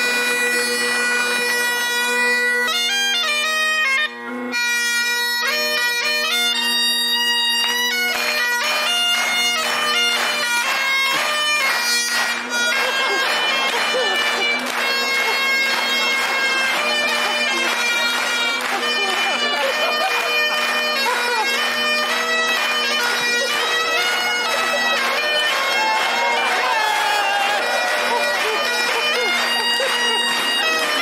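Great Highland bagpipes playing a tune: the chanter's melody runs over the steady drones, with a brief break about four seconds in.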